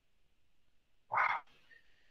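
Near silence, then a man's single short exclamation, "Wow," about a second in.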